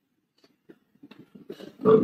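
A pause in a man's speech through a microphone: near silence with a few faint clicks, then his voice starts again loudly near the end.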